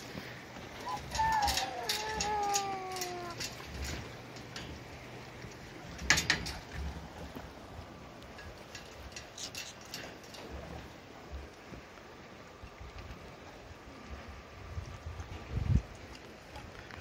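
Footsteps and knocks on a wooden boat dock, with a drawn-out falling whine about a second in and a sharp knock about six seconds in.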